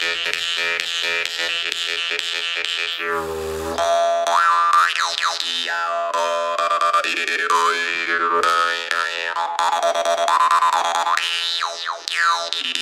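Steel "Tesla" jaw harp played without its tone-changing magnet: a steady droning pitch kept going by rapid plucks. Overtone melodies glide up and down as the mouth shape changes, with a brief deeper tone about three seconds in.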